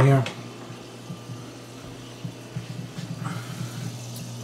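Saltwater aquarium equipment running: a steady low pump hum with faint bubbling water from the filtration, and a few small ticks.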